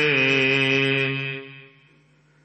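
A male voice chanting a Gurbani verse of the Hukamnama recitation, holding one long note that steps down slightly and then fades out about a second and a half in, leaving near silence.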